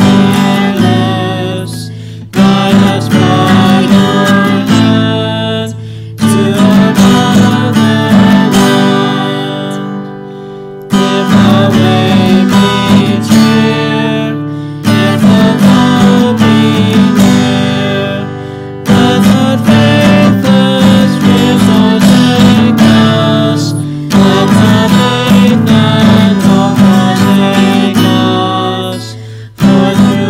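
A man and a woman singing a hymn together to a strummed acoustic guitar, in phrases of about four seconds with a short pause between each.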